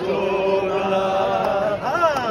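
A man singing a Sai Baba devotional chant, holding one long steady note, then gliding up in pitch near the end into the next phrase.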